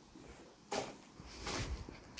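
Two faint footsteps scuffing on a gritty concrete floor, a sharp one about two-thirds of a second in and a heavier, longer one about a second and a half in.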